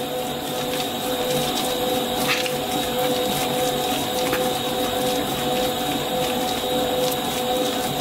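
Stand mixer running steadily with a constant whine, its spiral dough hook kneading brioche dough while eggs are added. A couple of faint knocks sound about two and four seconds in.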